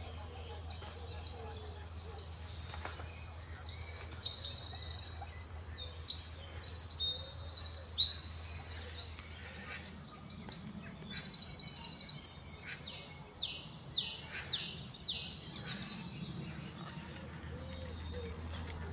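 Songbirds singing: a loud, fast, high trilling song repeated for several seconds over a low steady rumble. After about ten seconds come quieter phrases from a dunnock and a great tit, the great tit with a short run of repeated notes.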